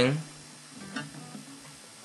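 Acoustic guitar strings ringing faintly as the fretting hand settles into an A chord on the second fret, with a light click of fingers on the strings about a second in.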